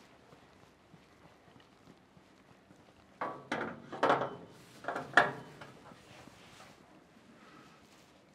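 Aluminium ladder knocking and clattering against the metal side of a combine harvester as it is set up, a handful of sharp knocks over about two seconds starting about three seconds in.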